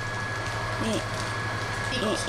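Steady low machine hum with a thin, steady high whine above it, and a brief voice sound about a second in.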